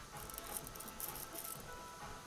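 Worn clutch release bearing turned by hand, giving a faint, gritty rattle of small clicks: the bearing is dead, worn out like an old skateboard bearing.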